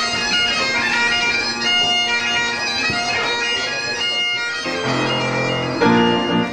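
Highland bagpipes playing a tune over their steady drones. About three-quarters of the way through, the bagpipes give way to a boys' choir singing a held chord.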